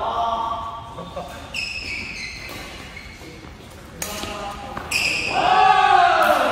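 Indoor badminton rally: sneakers squeaking on the court mat, and two sharp racket hits on the shuttlecock about a second apart, two-thirds of the way through. Players' voices are heard at the start and again near the end.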